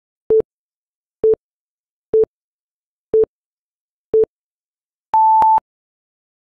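Electronic countdown beeps: five short, low beeps a second apart, then a longer, higher final beep marking zero.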